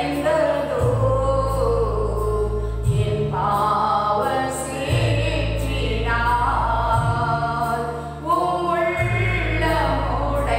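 A woman singing a Christian hymn into a microphone, holding long notes, over an accompaniment of low bass notes that change about every two seconds and a light steady beat.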